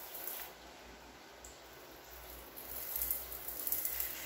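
Hiss of a hand-pumped pressure sprayer shooting a thin jet of liquid. It stops about half a second in and starts again for the last second and a half.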